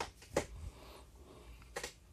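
Quiet room tone broken by three short, faint clicks: one at the start, one a little later, and one near the end.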